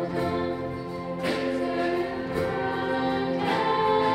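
A small band of keyboard, acoustic guitar, clarinet, violin and bass guitar playing a worship song at a steady pace, with many voices singing along.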